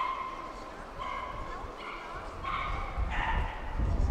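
A dog yipping, short high calls about once a second, among passers-by talking; a low rumble rises near the end.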